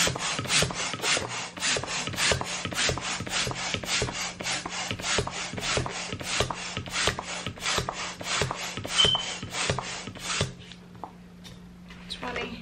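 Hand balloon pump worked in quick, even strokes, about three rasping rushes of air a second, inflating a latex balloon. The pumping stops near the end.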